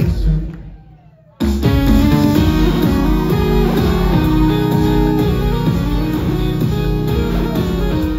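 Live synth-pop band heard through a venue PA on a phone recording: keyboards, electronic drum pads and electric guitar over a steady beat. The music drops away almost to nothing about half a second in, then comes back in full at just under a second and a half.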